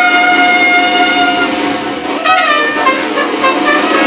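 Mexican brass band (banda) of trumpets, trombone, saxophone and sousaphone playing long held chords, with a brief sliding note a little past halfway.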